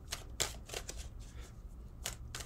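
Tarot cards being shuffled by hand: a run of short, sharp papery flicks, over a low steady hum.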